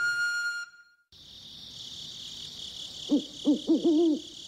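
Night ambience: a steady high chirring of crickets, joined near the end by an owl hooting several times in quick succession. In the first second the last notes of a musical cue fade out.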